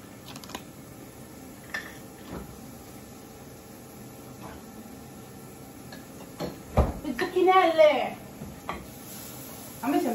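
Light kitchen clatter of dishes and utensils, a few scattered clicks, then a thump about seven seconds in, followed at once by a brief wavering voice.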